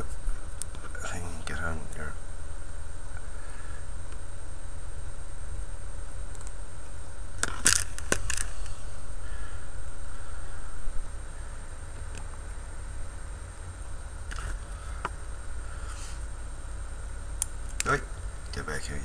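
A few sharp, isolated clicks of metal tweezers setting small plastic track links down on a steel ruler, spaced several seconds apart, over a steady low hum.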